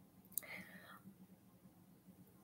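Near silence, broken about half a second in by a faint mouth click and a brief, faint whispered breath from a woman's voice.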